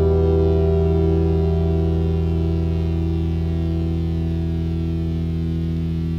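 A chord on electric guitar and bass held at the close of the song, ringing steadily and slowly fading out.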